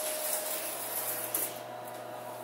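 Steady background hum with a faint high hiss that fades about a second and a half in, and a single short click just before it fades.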